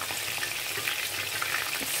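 Fish pieces shallow-frying in hot oil in a steel frying pan: a steady sizzle and crackle.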